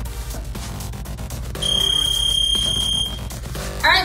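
Electronic background music, with a gym interval timer's long, steady high beep about one and a half seconds in, lasting about a second and a half, marking the end of the work interval.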